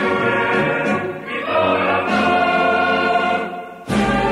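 Recorded choir singing, the phrase dying away shortly before the end.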